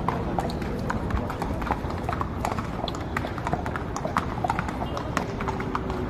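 A horse's hooves clip-clopping on stone paving at a walk, a string of sharp, uneven knocks, with crowd voices behind.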